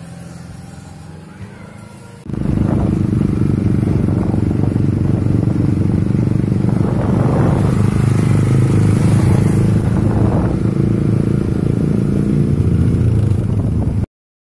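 Small motorcycle engine running steadily and loudly, cutting in suddenly about two seconds in and cutting off at the end.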